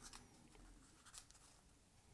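Near silence, with a faint rustle and a few soft ticks of folded paper being handled as its tab is tucked into a slot.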